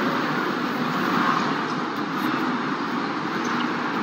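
Steady street traffic noise from a busy city avenue.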